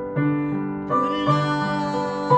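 Digital piano playing slow, sustained chords, with three new chords struck in the space of about a second and a half.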